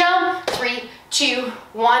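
Two sharp hand claps about a second apart, under a woman's voice calling out cues.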